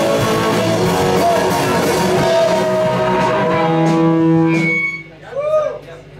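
Live rock band playing loudly with electric guitars, bass, drums and vocals, ending the song on a held chord that rings on and then cuts off about five seconds in. A voice is heard briefly in the quiet after it.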